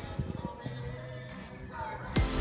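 Background electronic music in a quieter passage: the drum hits stop about half a second in, leaving held notes, with a short sliding tone near the end.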